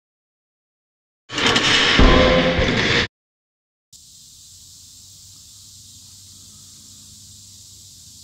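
A loud, sudden burst of sound lasting under two seconds, with a sharp hit in the middle, that cuts off abruptly. After a second of silence comes a faint, steady outdoor background hiss.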